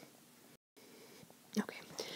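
Near silence: faint room tone with a brief dead-silent dropout about half a second in, then a soft spoken "okay" near the end.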